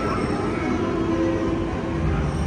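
Continuous low rumble of a fireworks display, with faint sustained tones of the show's soundtrack music underneath.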